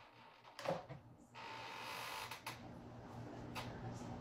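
A knock, then from about a second and a half in a small round desk air-circulator fan running with a steady rush of air and a low motor hum.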